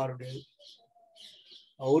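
A man's speaking voice breaks off about half a second in. In the pause that follows, faint, brief bird chirps are heard in the background before the speech resumes at the end.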